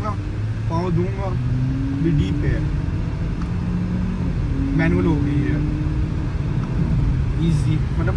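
Audi A5 S Line engine and road rumble heard from inside the cabin while accelerating. The engine note rises steadily twice, with a drop in pitch between the two rises.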